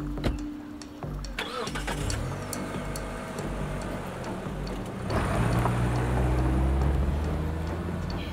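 A car engine running and pulling away, growing louder about five seconds in with a slight rise in pitch as it accelerates, then easing off. A regular ticking beat from background music runs underneath.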